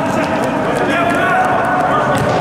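Live sound of a futsal game in a sports hall: players' voices and calls over running footsteps on the court.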